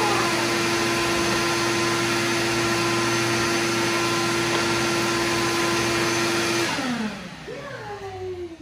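Vacuum cleaner running with a steady, even whine, then switched off about two-thirds of the way through, its motor winding down in a falling pitch.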